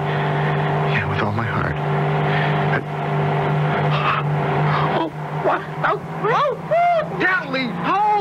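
Steady drone of a small propeller plane's engine, a radio-drama sound effect, heard as from inside the cabin. Voices rise over it in the last few seconds.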